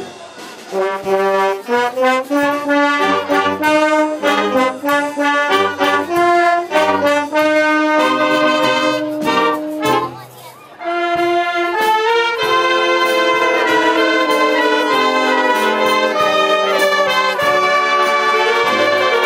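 A wind band of brass and woodwinds (trumpets, French horn, euphonium and flutes) playing a piece. Short, detached notes come first, then longer held notes, with brief breaks just after the start and about ten seconds in.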